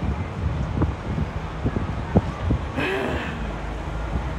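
Wind buffeting the microphone of a camera on a slingshot-ride capsule: a steady low rumble with scattered clicks. A brief vocal sound from a rider comes about three seconds in.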